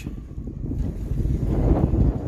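Wind buffeting the microphone: a low rumble that grows louder from about half a second in.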